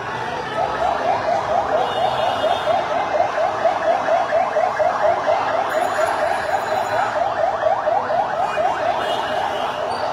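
An electronic siren sounding in a fast yelp, a rapid run of rising sweeps several times a second, over the steady noise of a large crowd.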